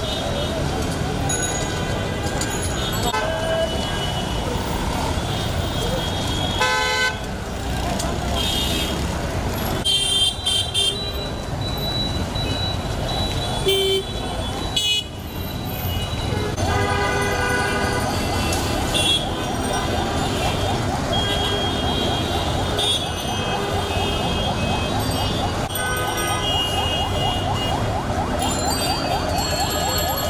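Busy street crowd: many people talking over road traffic, with vehicle horns honking in short, repeated toots throughout.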